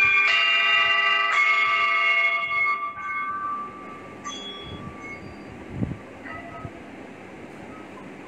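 Metal chimes struck several times in quick succession, their bright overlapping notes ringing on and fading out over about three seconds. A fainter single strike follows about four seconds in, then a few dull low knocks.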